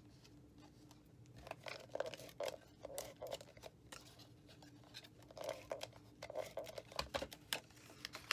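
Cardstock and designer paper being folded and pressed flat while a Fast Fuse adhesive applicator is run along the box flaps: soft scattered rustles and small clicks.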